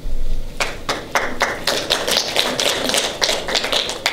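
A dull thump at the very start, then audience applause: a few separate claps about half a second in, quickly filling into dense, irregular clapping.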